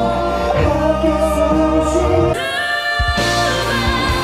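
Live pop singing over accompaniment: two male voices sing into microphones, then after about three seconds the music breaks and a female vocal group's live performance begins.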